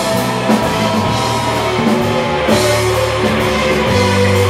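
Indie rock band playing live: electric guitars, keyboards and a drum kit, with a cymbal wash about two and a half seconds in.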